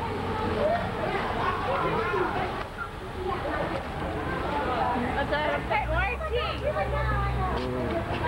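Crowd of teenagers talking at once, many overlapping voices close by. A low, steady rumble joins in about six seconds in and lasts under two seconds.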